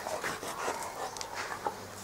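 A large dog sniffing and breathing in short, irregular puffs, a handful of faint soft sounds.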